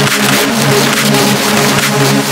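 Minimal hard tech dance track: a dense, loud electronic mix with a sustained low synth tone and steady, regular percussion hits.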